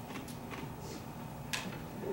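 Quiet room tone in a pause between speech, with a few faint clicks and small handling noises. The sharpest click comes about one and a half seconds in.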